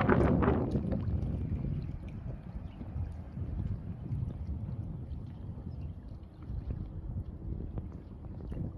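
Wind buffeting the microphone with water lapping at a rocky shore, loudest in the first second and then easing to an uneven rumble.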